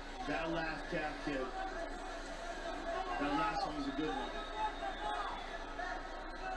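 Television fight-broadcast commentary: men's voices talking continuously, played through a speaker in the room.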